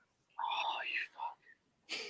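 Quiet whispered muttering under the breath, in a couple of short spurts, followed by a short breathy sound near the end.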